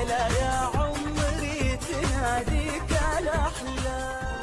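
Arabic pop birthday song: a singer's ornamented, wavering melody over a steady beat and backing band, starting to fade out near the end.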